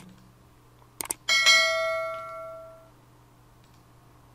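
Subscribe-button animation sound effect: two quick clicks, then a single bell ding that rings out and fades over about a second and a half.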